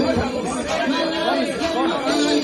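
Many voices at once: a group of people talking and calling out over each other in a room.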